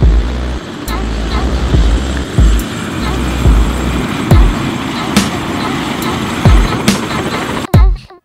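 Electronic background music with deep bass thumps, over the steady noise of a helicopter's engine and rotor.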